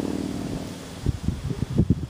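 Wind buffeting the microphone in irregular low gusts through the second half, after a steady low hum fades out about a second in.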